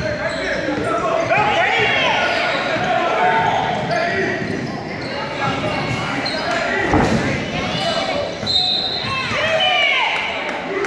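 Basketball game in a large gym: a ball bouncing on the hardwood court, sneakers squeaking, and the voices of players and spectators calling out, all echoing in the hall. A loud thud comes about seven seconds in.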